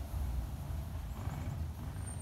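A faint, brief sound from the Shetland sheep about a second in, over a steady low rumble.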